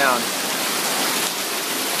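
Heavy rain bucketing down, a steady even hiss of rain on the roof and surrounding foliage.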